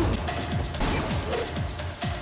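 Fight-scene soundtrack: loud action music with a fast, dense run of sharp clicks and knocks and repeated short falling low sweeps.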